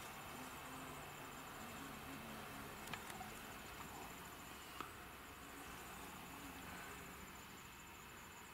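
Faint, on-and-off buzzing of bald-faced hornets flying at the entrance of their nest, with two small clicks.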